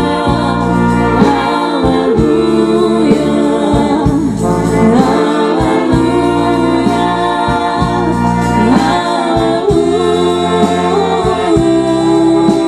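Czech brass band (dechová hudba) playing a song with vocalists singing over it, low bass notes sounding on a regular beat underneath.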